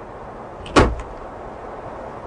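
A car door slamming shut on a classic convertible sports car, one sharp slam about three quarters of a second in, over a steady background rush.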